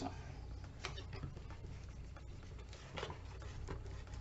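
Faint rustling and rubbing of cardstock as glued paper box pieces are pressed together and then rubbed with a bone folder, with a few soft scrapes about a second in and near the end, over a steady low hum.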